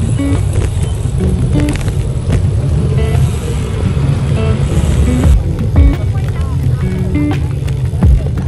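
Background music with a melody of short notes, over a steady low rumble of wind and road noise from riding. A few heavy low thumps come in the second half.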